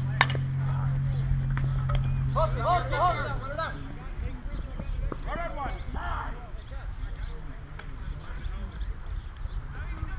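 A softball bat striking the ball with a single sharp crack just after the start, followed by players shouting and calling out over the field.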